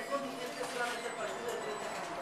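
Speech: a woman talking into a set of microphones.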